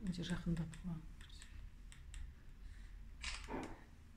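Faint irregular clicks, with a short low voice in the first second and a brief rustle near the end.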